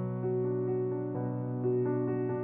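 Slow, gentle piano music: sustained notes ringing over one another, with a new note or chord coming in about every half second.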